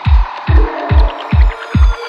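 Progressive psytrance music: a steady four-on-the-floor kick drum at about two and a half beats a second under sustained synth tones, with a short repeating synth line coming in about half a second in.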